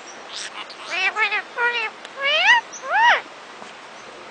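Indian ringneck (rose-ringed) parakeets talking: a run of about five short, high-pitched, speech-like phrases whose pitch rises and falls, ending a little before the last half-second.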